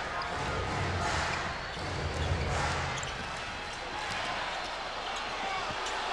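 Arena crowd noise during live basketball play, swelling and easing in waves, with faint basketball bounces on the hardwood court.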